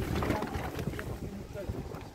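Wind buffeting the microphone in uneven low gusts, strongest in the first second, with people talking faintly in the background.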